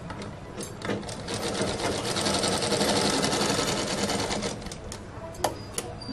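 Sewing machine stitching one short run of fast, even stitches. It starts about a second in and stops after about three and a half seconds, with a few separate clicks before and after.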